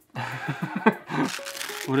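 The squeaker inside a BarkBox 'Captain Woof' plush pirate dog toy squeaking as the toy is squeezed by hand. A short laugh comes near the end.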